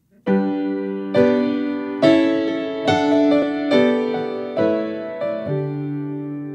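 Yamaha grand piano played slowly: sustained chords, a new one struck about once a second, each ringing on and fading under the next. The playing begins about a quarter second in.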